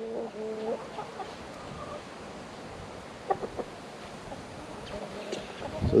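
Chickens clucking: a few short clucks in the first second, then a couple of fainter ones about halfway through, over a light steady hiss.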